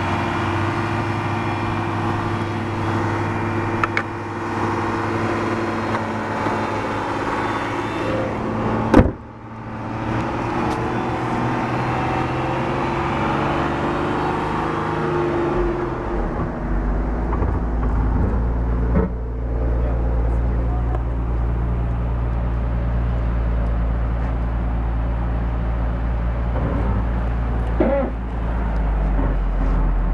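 A 2006 Dodge Charger's 3.5-litre high-output V6 idling steadily, with a single sharp knock about nine seconds in.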